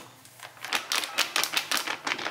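Wall putty powder being made up with a little water in a plastic cup: a quick run of sharp clicks and taps on the cup, about six a second, starting about half a second in.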